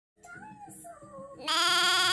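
Soft gliding tones, then about one and a half seconds in a loud, wavering, bleat-like animal call starts and carries on.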